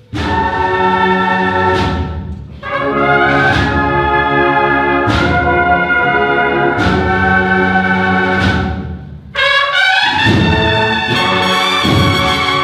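Cornet and drum band (banda de cornetas y tambores) playing long held brass chords with a church echo. After a short break about nine seconds in, the band comes back in fuller, with drum strokes.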